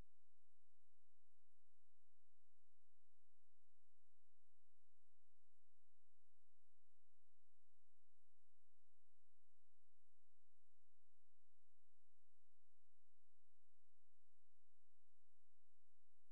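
A faint, steady electronic tone made of a few fixed pitches over a low hiss, unchanging throughout, with no clicks or other events.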